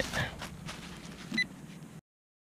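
Faint rustling and scraping of leaf litter and soil as a gloved hand works a small dug hole, with one short high beep about one and a half seconds in from a handheld metal-detecting pinpointer being pushed into the hole.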